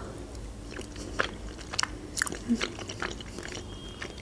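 Close-miked chewing of boiled pelmeni dumplings with cheese sauce, with short wet mouth clicks scattered through.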